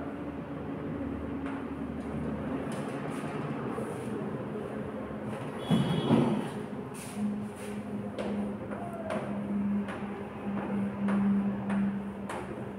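Chalk tapping and scraping on a chalkboard as words are written, in short strokes over steady room noise. There is a brief louder sound about six seconds in, and a steady low hum from about seven seconds on.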